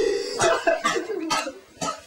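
A person's voice in short, breathy bursts, about four of them roughly half a second apart, like coughing or hard laughter.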